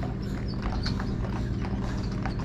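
Carriage horses' hooves clip-clopping on an asphalt road: an uneven run of sharp clops.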